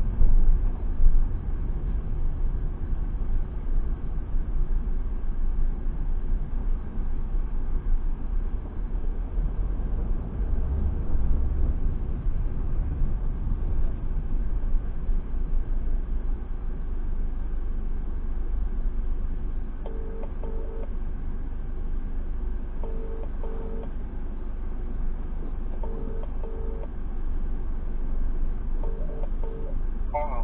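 Steady low rumble of a car's engine and tyres on a wet road, heard from inside the cabin in slow traffic. About twenty seconds in, a phone starts ringing with a double ring repeated about every three seconds, three times.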